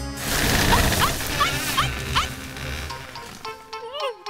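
Background music with a noisy rustling crash and a cartoon puppy's short rising yelps, about five in quick succession, dying away by about three seconds in.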